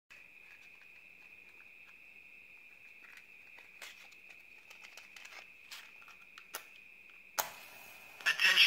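Faint clicks and rustles of a cardboard matchbox being handled and a match taken out, over a steady faint high whine. Near the end a sharper scrape is followed by a brief hiss as a match is struck and flares.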